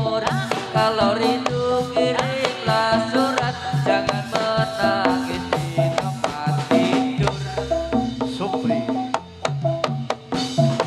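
Live jathilan gamelan music: kendang hand drums playing a busy rhythm under steady pitched melody notes. A deep low boom sounds about seven seconds in.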